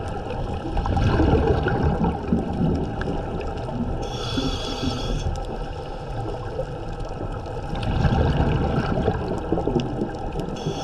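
Scuba diver breathing through a regulator underwater. There is a hissing inhale about four seconds in, and low rumbling bursts of exhaled bubbles around one to two seconds in and again near the end.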